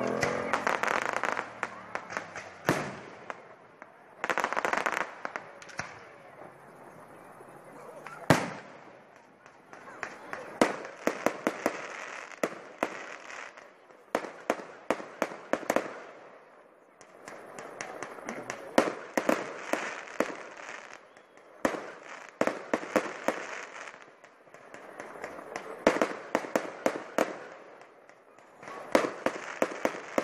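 Fireworks display: shells bursting in sharp bangs followed by long runs of rapid crackling, with a rushing hiss between volleys. The loudest single bang comes about eight seconds in.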